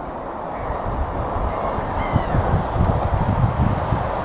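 Wind buffeting the microphone with a steady low rumble. About halfway through, one short bird call comes in with a slight downward fall.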